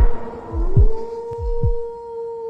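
Dramatic heartbeat sound effect: a slow run of deep thuds, under a held steady tone that slides up in pitch about a quarter of the way in.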